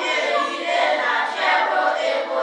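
A class of children's voices reciting a poem in unison, a chanted chorus in phrases with brief breaks between them.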